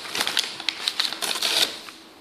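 Paper Happy Meal bag rustling and crackling as a hand rummages inside it, a quick run of crisp crinkles that dies away near the end.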